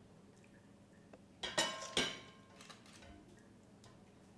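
A metal spoon knocks against a ceramic bowl twice, about a second and a half in and again half a second later, with a brief ring after the first knock, as thick mashed soup is spooned into the bowl.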